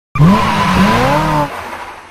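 Car tyres squealing over an engine revving up and down, as a car drifts or does a burnout. The sound cuts off sharply about one and a half seconds in, leaving a short fading tail.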